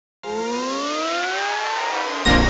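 Rising whoosh sound effect: after silence it starts abruptly a moment in, a pitched tone climbing steadily over a hiss.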